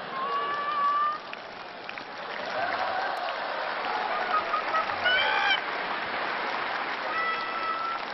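Studio audience applauding, with a few long held shouts over the clapping: one near the start, one about five seconds in and one near the end.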